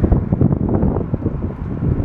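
Gusty wind buffeting the phone's microphone, a loud, irregular low rumble, as a thunderstorm moves in.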